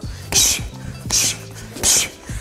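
Knee strikes into a hanging heavy bag in a clinch drill: three sharp hissing exhales about three-quarters of a second apart, each with a dull thud of the knee landing, over background music.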